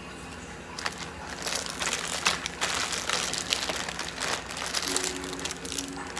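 Thin plastic packaging crinkling and crackling as it is handled, in a dense irregular run of crackles that grows busier about a second and a half in.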